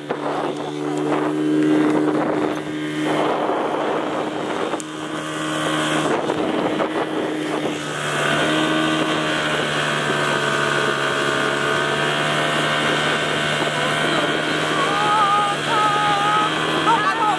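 A 30 hp outboard motor drives a speedboat at speed, its engine note steady over rushing water. Wind buffets the microphone, strongest in the first few seconds.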